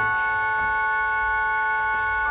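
Organ holding one sustained chord, steady and unchanging.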